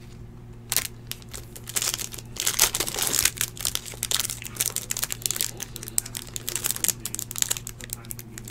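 Clear plastic wrapper of a Panini 2016 Absolute Football card pack being torn open and crinkled by hand. It starts about a second in as a dense run of crackles and is loudest around the middle.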